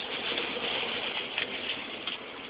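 A ferret dooking: soft, low clucking over a steady hiss.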